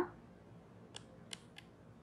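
Three faint, short clicks of a stylus tapping on a tablet screen while a word is handwritten, about a second in and twice more shortly after.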